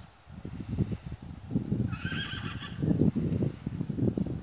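A harnessed pony whinnying once, briefly, about halfway through, over a continuous low rumble.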